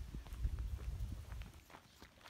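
Footsteps on a dirt trail, a string of short scuffs. A low rumble on the microphone dominates the first second and a half.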